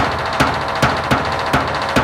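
Instrumental passage of a 1990s Bollywood film song, without singing: regular drum beats, about two to three a second, over a melodic backing.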